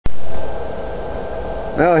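Steady electrical hum from running power inverters and a small cooling fan, with a faint steady whine over it. A click at the very start.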